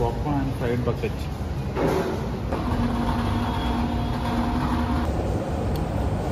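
Brief speech over the background din of a fast-food restaurant, with a steady hum of held tones for a couple of seconds in the middle.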